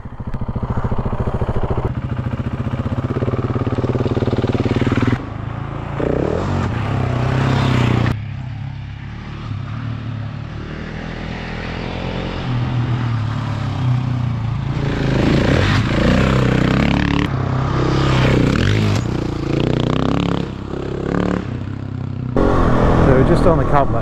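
Husqvarna 701 Enduro's single-cylinder engine running and revving as the bike is ridden off along a dirt track, the engine note shifting up and down, with abrupt changes in sound at several edit cuts.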